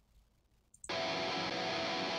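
Near silence, then a little under a second in a recorded high-gain electric guitar track starts suddenly and plays on steadily. The guitar runs through an STL ToneHub amp-sim preset modelled on a Bogner amp.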